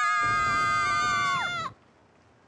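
A cartoon child's voice holding one long, high-pitched drawn-out cry with a slight waver, dropping in pitch and cutting off about three-quarters of the way through.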